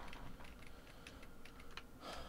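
Faint, irregular clicks of computer keys being pressed.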